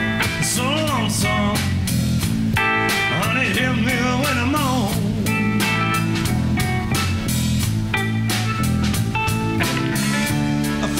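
Blues band playing live: electric guitars, bass and drum kit with a steady beat, the lead notes bending up and down in pitch.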